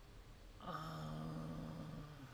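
A man's long, flat-pitched "uhhh" of hesitation, starting just over half a second in and held for about a second and a half, over faint room tone.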